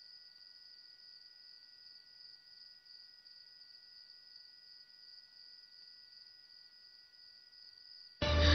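Near silence, with a faint steady high-pitched trill and two fainter steady tones beneath it.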